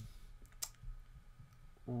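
A single sharp click of a computer mouse button, about half a second in.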